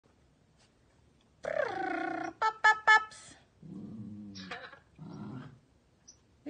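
Puppies play-fighting: a drawn-out whiny yowl falling in pitch, then three quick, sharp high yips, the loudest sounds, then two low growls in the second half.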